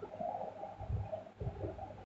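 A dove cooing faintly.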